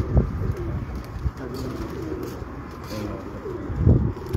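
Domestic pigeons cooing, a low wavering coo through the middle, with a low thump near the end.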